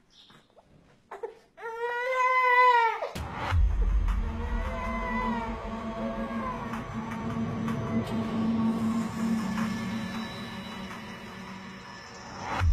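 A baby gives one long cry, then background music with a deep bass sets in about three seconds in.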